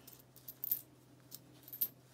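Copper pennies clinking against each other as a gloved hand slides and sorts them on a towel: a few light clinks, with the sharpest one near the end.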